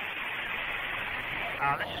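Steady hiss of a two-way military radio channel, the narrow, band-limited static of an open transmission between calls, until a voice comes in near the end.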